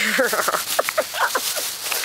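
Thin plastic bag rustling and crinkling close to the microphone as it is handled and pulled over the hands, with short bits of voice and laughter.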